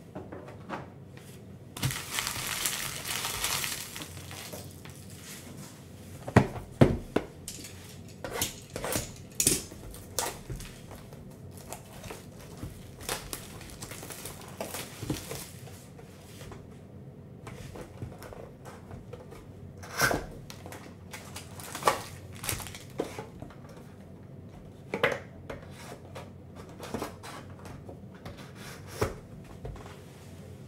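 Hands opening a trading-card hobby box and pulling out its foil packs. About two seconds in, there is a burst of tearing and crinkling. After that come scattered taps, knocks and rustles of cardboard flaps and foil packs being handled and set down.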